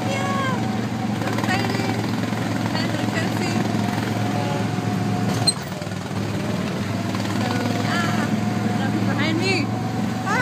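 Engine of a small ride vehicle running steadily as it drives along, with laughter and voices over it. There is a brief click about halfway through.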